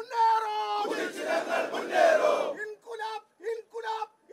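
A large crowd shouting political slogans in call and response: one voice shouts a line, the massed crowd answers together, and the lead voice then calls again in short shouts.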